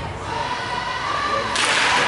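Ice hockey skates scraping and cutting the ice at a faceoff: a sudden hiss about one and a half seconds in, over faint voices around the rink.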